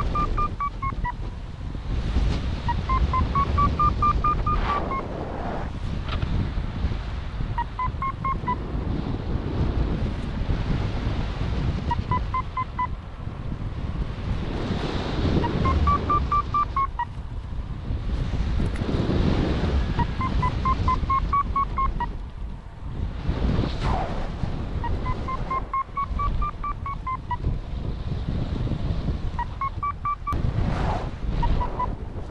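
Paragliding variometer beeping in repeated bursts of quick short beeps, the pitch rising then falling within each burst, every few seconds: the climb tone that signals the glider rising in lift. Loud, gusty wind buffets the microphone throughout.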